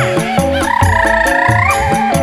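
Live campursari / dangdut koplo band music: held keyboard chords over a steady kendang drum beat. A high, wavering, trilling melody line sounds for about a second in the middle.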